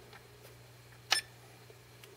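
A single sharp click about a second in as a button on the SkyRC MC3000 charger's keypad is pressed, with a much fainter tick before it, over a faint steady hum.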